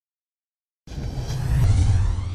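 Silence for almost a second, then a deep rumbling whoosh starts suddenly and swells louder: a sound effect accompanying an animated logo intro.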